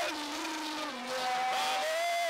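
Worship singing: a lead singer and backing vocalists into microphones, holding long notes that slide between pitches.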